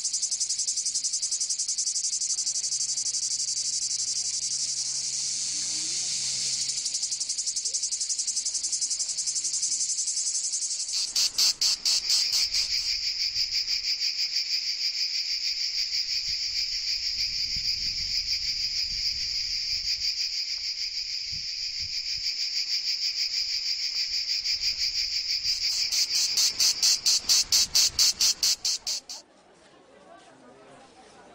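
Insects chirring: a dense, high-pitched buzz that turns into a fast pulsing trill about eleven seconds in, swells into loud rapid pulses near the end, then stops abruptly.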